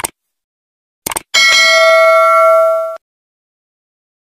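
Subscribe-button sound effect: a short mouse click at the start, another click about a second in, then a notification bell ringing with several bright steady tones for about a second and a half before it stops.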